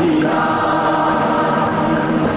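A chorus singing long held notes in an old Hindi film song, with orchestral accompaniment.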